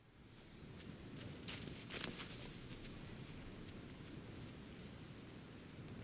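Faint cinematic intro of a heavy metal music video: a hissing ambience that swells over the first second or two and then holds steady, with a few sharp knocks in the first two seconds.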